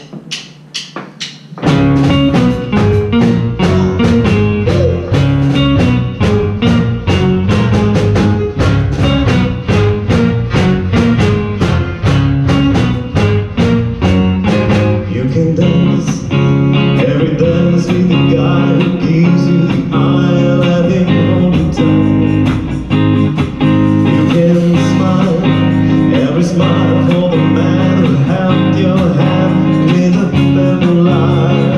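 A live band of electric guitar, bass guitar, drums and keyboards starts playing about two seconds in, with a steady beat. The arrangement fills out about halfway through.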